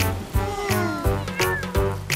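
A cartoon kitten's meows with falling pitch, over children's background music with a steady beat.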